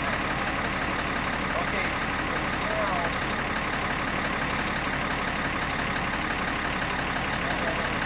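Crane engine idling steadily while the load hangs on the hook, with a few faint voices calling now and then.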